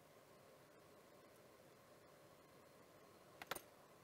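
Near silence: faint room tone, with two short faint clicks near the end.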